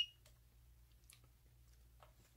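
The last moment of a handheld infrared thermometer's electronic beep, cutting off just after the start. It is followed by quiet room tone with a low hum and a faint click about a second in.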